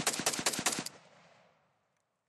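A burst of rapid automatic gunfire, about nine shots a second, that stops about a second in, its echo dying away over half a second.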